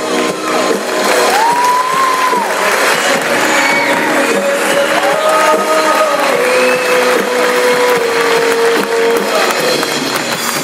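Live rock band playing: a long held melody line that bends and slides between notes over the full band.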